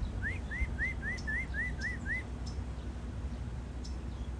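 A bird calling: a quick series of eight short, rising whistled notes, about four a second, lasting about two seconds, over a steady low hum.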